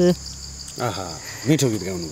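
Insects trilling steadily in a high, pulsing drone, with two short voice sounds about a second and a second and a half in. A held sung note ends right at the start.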